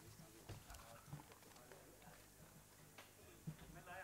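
Near silence: faint room tone with a few soft knocks and a faint murmur of voices near the end.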